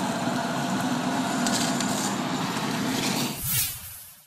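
Steady rumble of a running vehicle engine and noise at the scene of a burning house. A whooshing transition sound sweeps through about three and a half seconds in.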